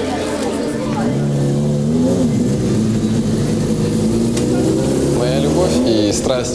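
Motorcycle engine running, revving up and back down about two seconds in, then holding a steady note.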